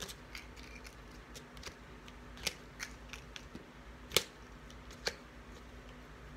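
Hands working paper craft pieces on a paper-plate model: scattered small clicks and paper rustles, with a few sharper snaps about halfway through and near the end.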